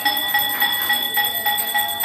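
A bell rung quickly and steadily during aarti, struck about three to four times a second with a high ringing tone that carries through.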